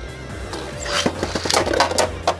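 Beyblade Burst spinning tops running on a plastic stadium floor and clacking against each other several times in the second second, over background music.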